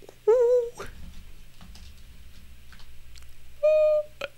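A short, wavering, hum-like vocal sound about a third of a second in. Then a quieter stretch with a few faint clicks, and near the end a steady, flat-pitched tone held for about half a second.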